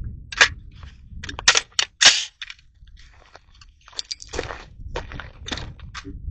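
A series of sharp cracks and clicks from the AR pistol: one about half a second in, a quick cluster of about four around one and a half to two seconds in, and a few more near the end.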